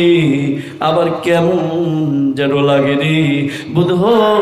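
A male preacher's voice chanting a sermon in a drawn-out, sung style. It comes in about three long phrases, each held on a steady note, with brief breaks for breath between them.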